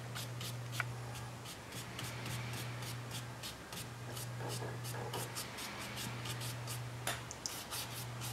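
Soft, quick strokes of a small fur brush flicking across watercolour paper, several light scratchy strokes a second, over a steady low hum.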